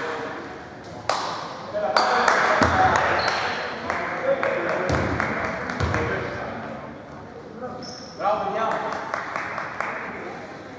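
Basketball bouncing on a hardwood court, a few deep thuds, under players' voices echoing in a large, near-empty arena, with a few short high squeaks.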